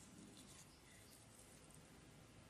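Near silence, with faint scratching and rustling as fingers handle a freshly 3D-printed plastic phone stand and pick off stray strands.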